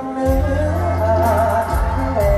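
Live amplified mor lam band music with a wavering sung melody. A heavy bass comes in about a quarter second in, under cymbals.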